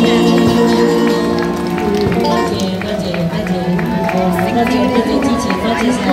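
A live band with electric guitar and keyboard at the end of a song: held notes die away under scattered clapping and crowd voices.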